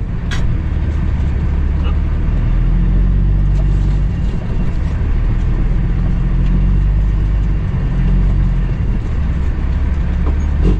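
Cummins ISX diesel engine of a 2008 Kenworth W900L, heard from inside the cab, running at low revs as the truck creeps forward, its deep rumble rising and falling slightly. A single sharp click comes just after the start.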